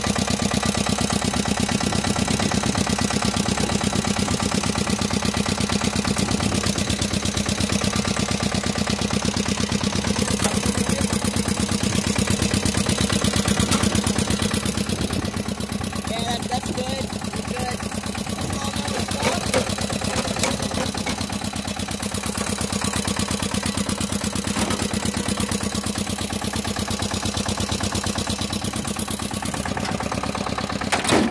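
Pasquali 991 tractor's diesel engine running steadily, a rapid even firing beat with a low hum. It drops slightly in level about halfway through, and a few sharp clicks or knocks come a little later.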